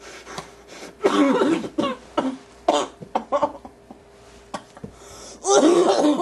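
A person's voice in short, loud bursts: a long one about a second in, a few brief ones in the middle, and another near the end.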